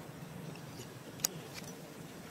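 Steady low background rumble, with one sharp click a little over a second in.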